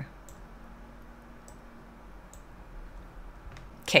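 Faint computer mouse clicks: a few single clicks spaced roughly a second apart, over quiet room tone.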